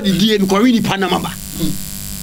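A man speaking animatedly in short bursts, trailing off near the end, over a steady electrical buzz.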